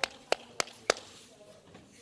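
Four sharp hand claps about a third of a second apart in the first second.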